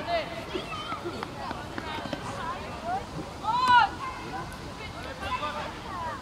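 Shouted calls from youth footballers and touchline onlookers, with one loud call a little past halfway through and fainter calls scattered around it.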